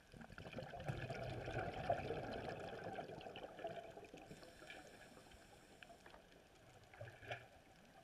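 Underwater: a scuba diver's exhaled bubbles gurgling and rushing up past the camera for about three seconds, then fading out, with a brief gurgle near the end.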